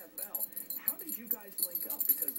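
A Rottweiler shaking, its metal collar tags jingling and clinking in rapid, repeated clinks.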